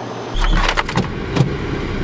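A car's engine running, heard from inside the cabin as a steady low rumble that begins suddenly, with a few quick clicks and rattles in the first second and a half.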